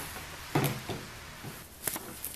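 A few short knocks and clicks as a Dremel rotary tool, switched off, is picked up and set against a paper template on a stone. The strongest knock comes about half a second in, with another just before the end.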